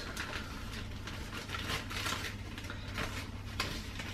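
Plastic bag of fresh mint rustling as leaves are picked out of it, faint, with many small irregular crackles over a steady low hum.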